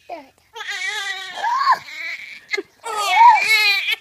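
Newborn baby crying in two long wails, each rising and then falling in pitch, with a short break between them a little under three seconds in.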